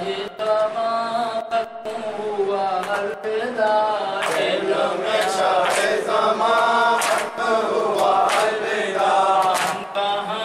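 A man chanting a noha, an unaccompanied Urdu lament sung in a wavering, sustained voice through a microphone. Sharp hand slaps on the chest (matam) mark a beat about once a second.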